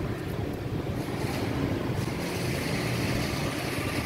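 Steady background noise with a constant low hum and no distinct events.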